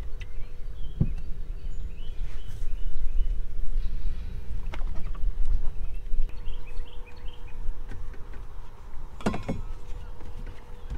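Wind rumbling on the microphone in an open boat, over a faint steady hum. A few sharp knocks ring out as a fishing rod is handled among the metal rod holders, the strongest about a second in.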